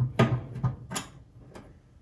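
A few light clicks and knocks of a screwdriver against the dryer's sheet-metal base as it is set onto the thermistor's Phillips mounting screw, all within the first second and a half.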